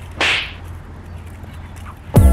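A speed rope swung through the air with one sharp swish, about a fifth of a second in, over a faint low hum.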